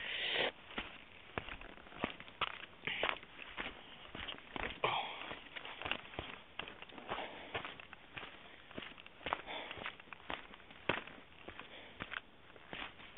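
Footsteps crunching on a rocky dirt trail at a walking pace of about two steps a second.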